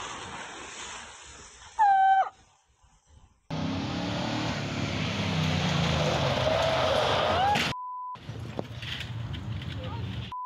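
Water splashing in a small pool, with a brief shrill cry about two seconds in. Then, after a cut, a tow truck's engine runs hard as it slides through a gravel corner. A short steady beep sounds near the end.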